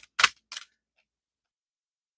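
Two sharp clicks of tarot cards being handled, the second fainter, as a card is drawn from the deck and laid down on the table.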